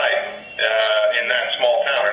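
A man's voice coming over a video-call link, thin and telephone-like and somewhat warbled, with a short pause about half a second in.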